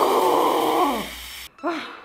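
A woman's long, drawn-out moan that falls in pitch as it ends, followed after a brief break by a second, shorter moan.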